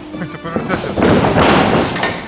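Background music over thuds of bare feet stepping and kicking on a boxing ring's canvas floor, which gives and shakes under a heavy man.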